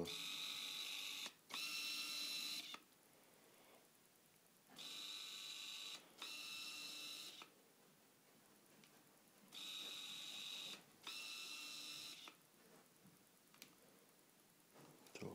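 Autofocus motor of a Tamron 70–300 mm macro zoom lens on a Nikon D40 whirring as it drives the focus. It runs in three pairs of steady whirs about a second long each, with quiet pauses between the pairs, showing how noisy and slow the lens is to focus.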